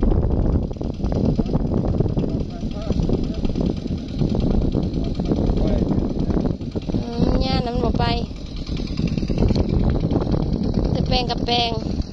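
Two-wheel walking tractor's single-cylinder diesel engine running steadily as it works the wet rice field. Voices speak briefly twice, about seven seconds in and again near the end.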